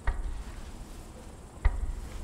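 Crickets chirping steadily at night, with two dull low thumps: one at the start and a louder one near the end.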